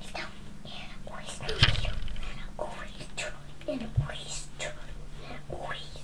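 A young girl whispering close to the toy camera's microphone, with a knock about one and a half seconds in and another at four seconds.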